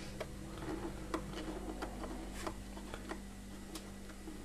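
Faint, irregular light clicks of a homemade epoxy-filled BIC pen-barrel tool turning a rivet-like screw out of a Nespresso coffee machine's plastic housing, over a steady low hum.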